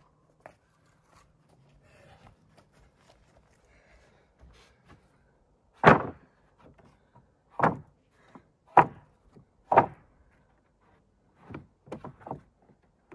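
Salvaged pressure-treated deck boards being laid onto a stack of boards: a quiet start, then a series of five wooden knocks and clacks as the boards land, the first the loudest.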